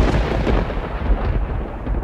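Thunder rumbling: one long, low roll that eases slightly near the end.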